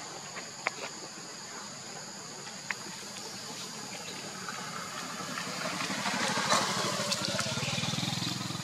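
A motor vehicle's engine approaches, growing louder over the second half, over a steady high buzz of insects. A few sharp clicks come in the first few seconds.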